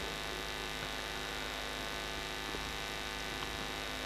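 Steady electrical mains hum with a stack of even, unchanging overtones, continuous throughout, with no other sound standing out.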